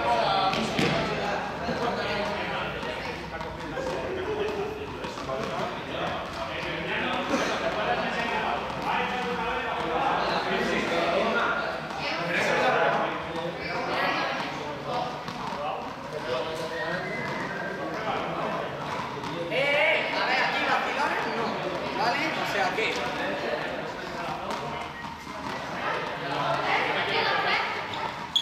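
Indistinct chatter of many voices echoing in a large sports hall, with occasional thuds of balls hitting the floor.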